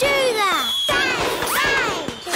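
Cartoon sound effects of noisy mayhem: a long falling pitched tone in the first second, then a shorter rising-and-falling one, mixed with crashing and whacking hits.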